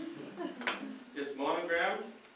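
A single sharp metallic clink with a short ring from the steel saw blade being handled and flexed, followed about half a second later by a person's voice.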